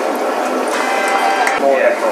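Indistinct voices over steady background noise.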